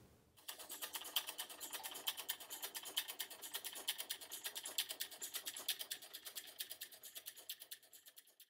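A rapid, irregular clatter of small clicks, about a dozen a second, starting about half a second in and growing fainter toward the end.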